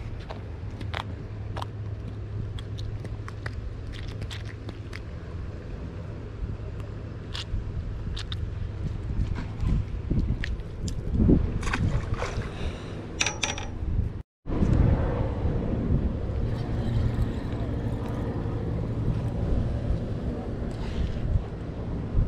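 Wind rumbling steadily on the microphone, with scattered small clicks and taps of fishing tackle being handled as a small puffer is taken off the hook. The sound cuts out for a moment about two-thirds of the way through.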